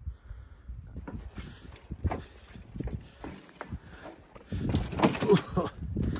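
Footsteps and scuffing as a person clambers over wet ground and scrap debris, with irregular knocks and thumps. A man's voice comes in near the end.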